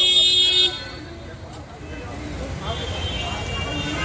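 A vehicle horn sounds once, loud and steady for under a second at the start, and a fainter horn tone returns near the end, over street traffic noise.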